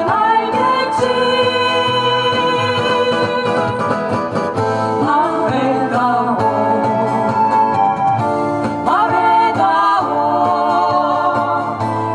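A woman singing a Korean pop song into a microphone, holding long notes, over acoustic guitar and backing music.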